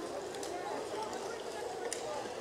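Indistinct chatter of several people's voices mingling, none clear enough to make out, with a few faint light clicks.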